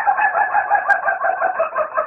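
A rooster crowing one long, drawn-out crow that warbles in quick pulses, about five a second.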